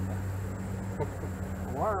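A steady low hum runs under a short click about a second in, and a man's voice starts speaking near the end.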